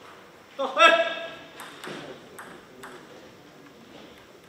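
A short, loud shout about half a second in, then four or five light ping-pong ball bounces, ticking at uneven intervals as a player bounces the ball before serving.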